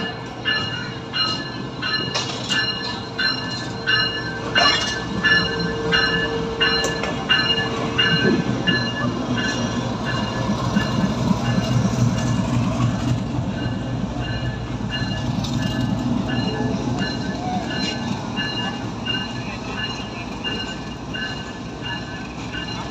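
Two coupled diesel-electric locomotives passing slowly underneath, their engines running with a low rumble that is loudest about halfway through as the lead unit goes below. Through the first half, high-pitched squeals from the wheels on the rails repeat about twice a second.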